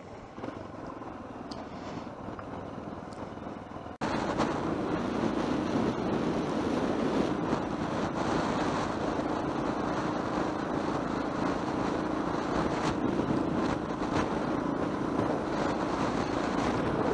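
Riding noise from a Yamaha XT600E single-cylinder trail bike on the move: a steady mix of engine and wind noise on the camera's microphone. It jumps abruptly louder about four seconds in.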